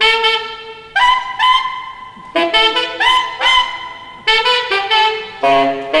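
Saxophone played live in a jazz quartet: a phrase of separate held notes, each sharply tongued, some scooping up into pitch.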